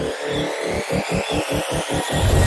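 Logo-intro sound effect: a noisy, stuttering pulse that speeds up as it builds.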